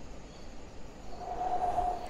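Low, steady rumbling ambience, with a soft sustained tone fading in about a second in and swelling slightly toward the end.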